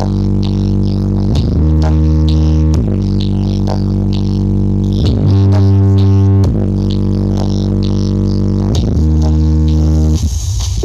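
A large stacked subwoofer sound system playing bass-heavy electronic music at high volume during a sound check: long, deep held bass notes that change pitch every one to two seconds, with light ticking percussion on top.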